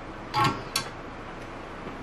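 Two short knocks at a workbench: a louder one about a third of a second in, then a sharp click just after, over a steady low hum.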